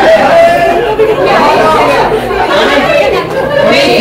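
Speech only: several voices talking at once, with no other sound standing out.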